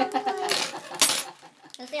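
Plastic instant-noodle packet handled and shaken, with two sharp rustling bursts about half a second and a second in; a voice laughs at the start.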